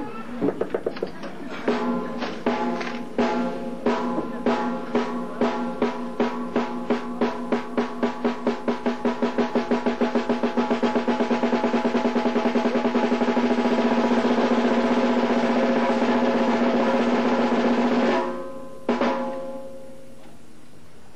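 Single strokes on a drum, played with the fingers in French grip: separate hits speed up steadily into a fast, even single-stroke roll. The roll stops suddenly near the end, and one last hit follows.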